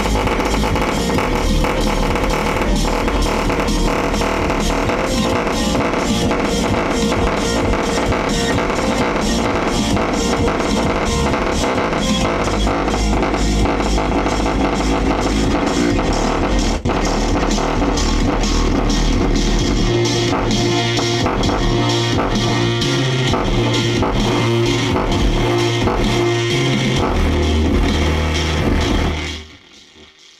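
Loud music with a steady beat played through old home stereo speakers, the woofer cone moving hard. Heavy low bass notes come in about two-thirds of the way through, and the music cuts off suddenly about a second before the end.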